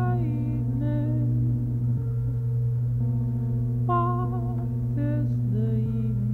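Experimental electronic drone music: a steady low drone with short, wavering pitched tones that come and go over it.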